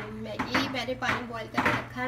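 Kitchen cookware and utensils clattering: several sharp knocks and clinks of metal against pans, over a steady low hum.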